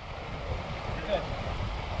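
Wind rumbling and buffeting on the microphone over a faint, even wash of water noise.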